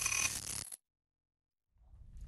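Logo-reveal sound effect for a TV show bumper: a bright, noisy shimmer with a few steady ringing tones that cuts off suddenly under a second in, then silence, then a low rumble coming in near the end.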